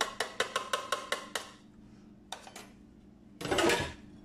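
A red plastic lid tapped rapidly over a glass mixing bowl, about eight sharp taps a second for a second and a half with a faint ring, knocking the last baking powder into the flour. A short rustling scrape follows near the end.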